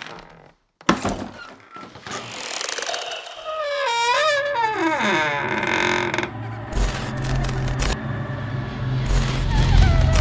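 Horror-style channel intro sound effects: a sharp hit about a second in, then a wavering sound sliding down in pitch, over a low rumbling drone cut by bursts of static-like hiss and a deep boom near the end.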